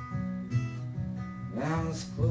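Solo acoustic guitar strummed and picked in a slow folk-country song between sung lines, with a man's singing voice coming in near the end.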